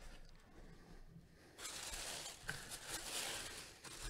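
Tissue paper rustling and crinkling as it is pulled back by hand from a packed jersey, starting about a second and a half in and running for about two seconds.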